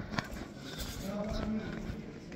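Indistinct voices, with a sharp click about a fifth of a second in.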